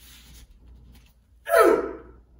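A martial artist's short, forceful vocal exhale with a strike, falling in pitch and loud, about one and a half seconds in, after a fainter rush of breath at the start.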